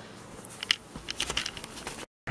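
Handling noise close to the microphone: a run of light clicks and rustles as something is handled, starting about half a second in.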